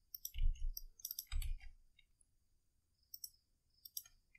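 Computer mouse and keyboard clicks: a cluster of short clicks, each with a dull thud, in the first second and a half, then a couple of faint clicks near the end.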